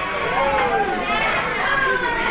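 Young girls' excited, high-pitched voices and laughter, with the chatter of a busy dining room behind.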